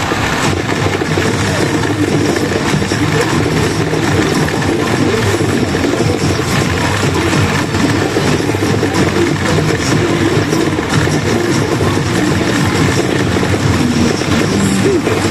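A Yajikita pachinko machine's music and sound effects during its rush mode while its reels spin, over a loud, steady din of a pachinko parlor.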